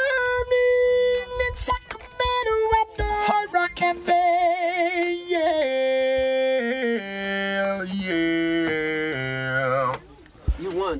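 Talk box voiced through a keyboard synthesizer, playing a melodic line of held notes that step from pitch to pitch, with a wavering note around the middle and a run of falling notes near the end.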